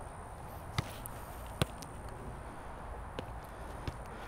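Quiet open-air ambience with a few faint, sharp taps; the two clearest come a little under a second apart, about a second and a second and a half in.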